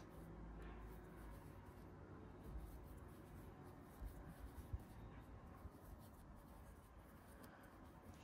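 Near silence, with faint rustling of yarn being drawn through stitches by a metal crochet hook as a puff-stitch edging is worked. A few light clicks come about four to five seconds in.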